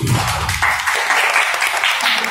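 Audience applauding, the clapping swelling about half a second in as the music stops.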